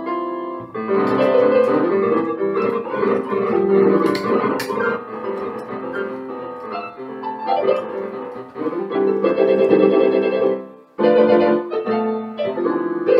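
Electric piano played by hand: a continuous run of chords and single notes, with a brief break about eleven seconds in before the playing picks up again.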